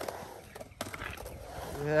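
Skateboard wheels rolling across a concrete bowl, a low steady rumble with one sharp click a little under a second in. A voice calls out near the end.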